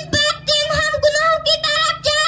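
A young boy singing solo into a microphone, unaccompanied, his high voice holding long steady notes in short phrases.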